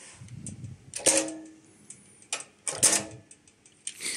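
A few sharp clicks and light metallic clinks from the steel parts of a slingshot target machine being handled, the loudest about a second in and another near three seconds.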